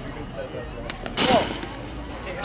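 A sharp, loud pop a little over a second in, a pitched baseball smacking into the catcher's mitt, with a short falling call over it.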